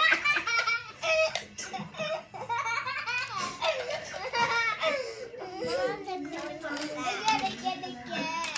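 A young girl laughing hard in repeated giggles, with one long stretch of laughter sliding down in pitch in the middle.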